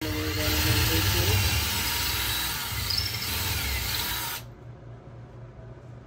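Cordless drill boring a dowel hole into the edge of a spalted maple board. The drill runs steadily under load for about four and a half seconds, then stops suddenly.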